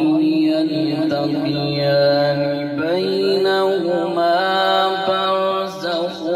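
A man's voice chanting over a microphone in long, held melodic notes that step up and down in pitch.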